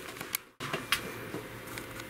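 Quiet room tone with a few faint, sharp clicks and handling noises, broken by a very brief gap of silence about half a second in.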